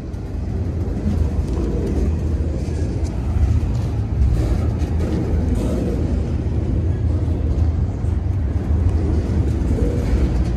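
Double-stack intermodal freight train's loaded well cars rolling past close by: a steady low rumble of steel wheels on rail, growing a little louder, with faint scattered clicks higher up.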